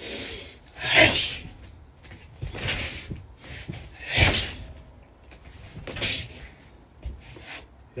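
A person moving through a repeated overhead hand strike, barefoot on foam mats: about four short swishes of clothing and moving air, some with a soft thump of a foot landing, one to two seconds apart.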